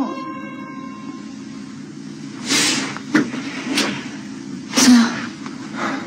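A steady low hum of the film's ambience, broken by four or five short, sharp knocks or bumps in the middle.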